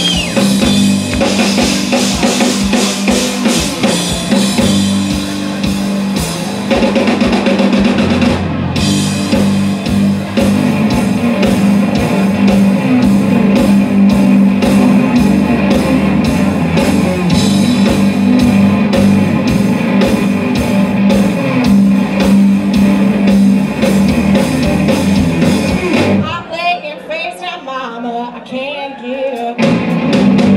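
Live blues-rock trio playing loudly: electric guitar over bass and a drum kit. About four seconds before the end the bass and drums drop out and the sound thins.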